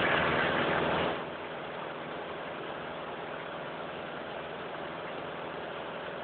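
Towing boat's motor running steadily under way, mixed with the rushing of its wake water. The sound is louder for about the first second, then holds even.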